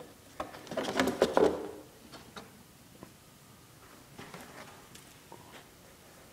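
Plastic clicks, knocks and rattles from the hard plastic body of an RC truck being handled and lifted off its chassis, a busy cluster in the first two seconds, then a few faint scattered clicks.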